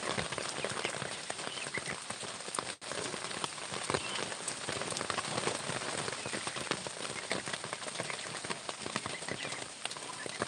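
Steady rain pattering, a dense hiss studded with the clicks of countless individual drops. The sound cuts out for an instant about three seconds in.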